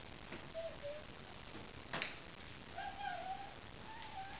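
A domestic cat giving short, wavering meows, a brief one about half a second in and a longer one about three seconds in. A single knock sounds about two seconds in.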